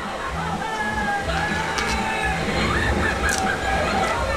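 Television playing in the background, with music and some indistinct broadcast sound.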